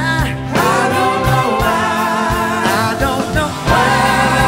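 Live blues-rock band playing, with singing over guitars and keyboards.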